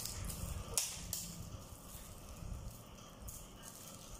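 Faint handling of a small cardboard juice carton, with two sharp clicks about a second in, over a low rumble.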